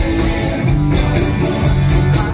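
Live rock band playing an instrumental passage with no singing: electric guitar over bass and drums with a steady beat, heard loud through the PA from within the audience.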